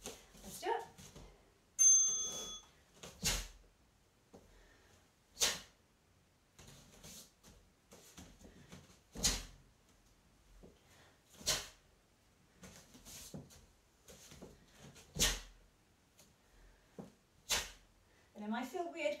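Short, sharp exhalations in pairs, one for each block of a Taekwon-Do middle block and knife hand guarding block combination, the pair coming back about every six seconds. A brief high electronic-sounding tone sounds about two seconds in.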